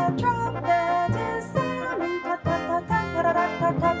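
One woman's voice recorded in several layered parts, singing a trumpet imitation on short, rhythmic "ta ta ta" syllables against other sung parts, with no instruments.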